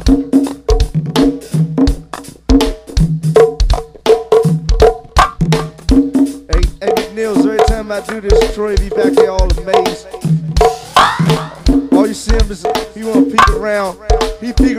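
Go-go band music: a steady, driving groove of drums and hand percussion, with a sharp knocking accent on the beat.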